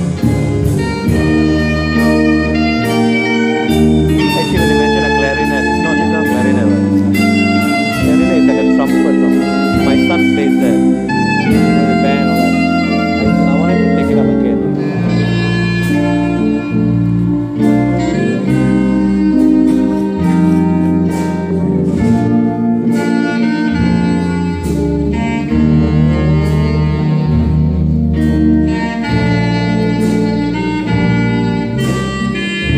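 A band playing a song: electric guitar over a bass line, with a steady drum beat.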